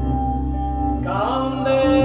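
Folk duo playing live: guitar over a steady sustained drone, and about a second in a man's voice begins singing in Occitan.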